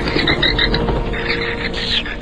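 Rapid, repeated croak-like animal calls over a steady background music drone.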